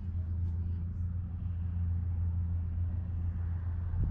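A steady low engine-like hum or rumble that holds at one pitch throughout.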